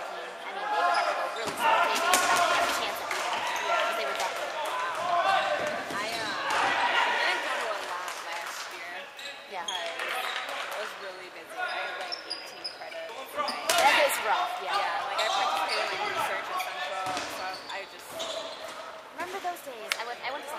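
Dodgeballs hitting the hardwood gym floor and players, several sharp hits scattered through, the loudest about 14 seconds in, echoing in a large hall, with voices calling throughout.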